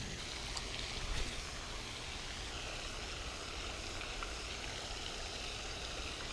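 Steady splashing hiss of a pond's spray fountain, with a few faint light clicks in the first second or so.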